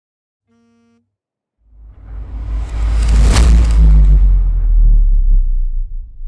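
Logo intro sound effect: a brief faint tone, then a rising whoosh over a deep rumble that swells to a peak about halfway through and fades away.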